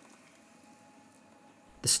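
Near silence: faint room tone with a faint steady hum, then a man's narrating voice begins near the end.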